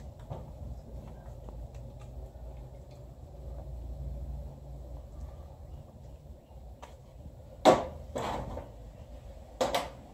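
Hand tools and bolts being handled at an engine block during assembly: a low steady rumble, then a few sharp clinks and knocks in the second half, the loudest about three quarters of the way through.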